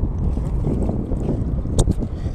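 Wind buffeting the phone's microphone as a steady low rumble, with one sharp click near the end.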